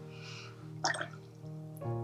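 Soft background music with sustained chords, a new chord coming in near the end, and faintly under it a brief wet swish of a brush mixing watercolour paint on a palette.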